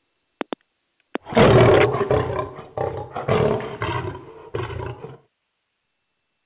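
Lion roar sound effect: three short clicks, then about a second in a long, loud roar that dies away in several pulses over about four seconds.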